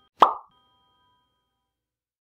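A single short 'plop' pop sound effect about a quarter-second in, accompanying an animated subscribe button, with faint held tones trailing off under it.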